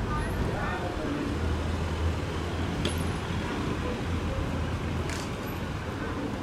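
Urban street traffic: a car driving up the street toward the microphone, its engine and tyres making a low rumble that swells about a second in and eases off near the end, over a steady background of traffic noise and voices.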